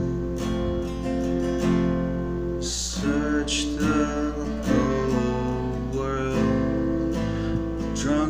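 Acoustic guitar strummed and played as chords, with a man singing a slow melody over it.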